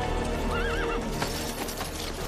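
A horse whinnying briefly, a short quavering call about half a second in, with a few hoof clops after it, over sustained background music.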